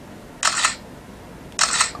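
A smartphone's camera shutter sound played twice through its speaker, about a second apart, each a short double click. Each one marks a photo taken by pressing the phone's rear fingerprint reader.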